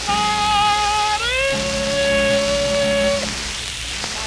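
Playback of a 1940s shellac 78 rpm record of a vocal-with-orchestra novelty song. A long held note glides up to a higher pitch about a second in and holds until about three seconds in, over the steady surface hiss of the disc.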